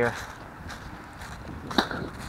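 Footsteps crunching through a thick layer of dry fallen leaves at walking pace, with one sharp click near the end.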